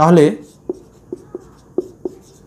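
Marker pen writing on a whiteboard: about five short, separate strokes over a second and a half.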